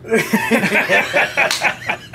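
Men laughing loudly together, several voices overlapping.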